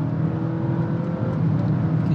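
Honda ZR-V e:HEV hybrid accelerating in sport mode, heard from inside the cabin: a steady low engine hum over road noise, with faint tones rising slowly as speed builds. In sport mode active sound control also plays the engine note through the cabin speakers.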